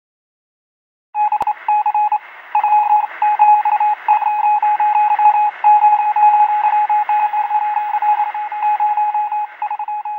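A single high beep tone keyed on and off in short and long stretches, like Morse code, over a radio-like hiss. It starts about a second in.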